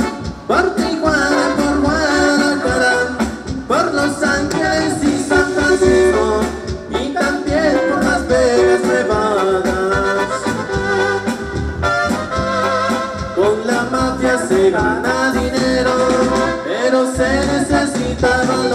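Live band playing Latin dance music on keyboards, electric guitars, bass and drums, with a sung melody over it, loud and continuous.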